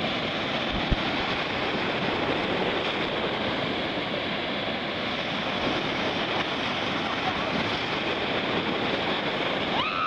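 Ocean surf breaking and washing through the shallows: a steady rushing hiss of water and foam. There is a single thump about a second in, and a short voice rising in pitch at the very end.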